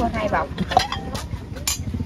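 A few light clinks of a metal ladle and a ceramic bowl against a steel wok during cooking.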